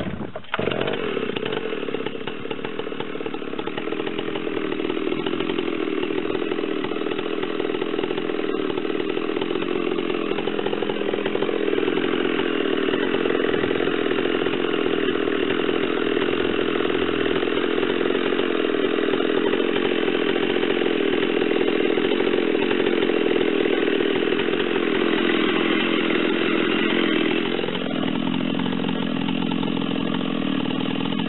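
Large Stihl two-stroke chainsaw held at full throttle, bucking through a big dry log in one long continuous cut. The engine note stays steady under load, then shifts near the end as the chain comes through the wood.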